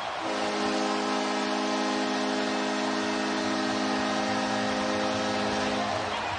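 Arena horn sounding one long steady blast, marking the home team's win, over a cheering crowd; it starts just after the opening and cuts off near the end.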